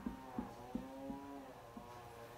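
Marker pen writing on a whiteboard: faint squeaks and light taps as letters are drawn.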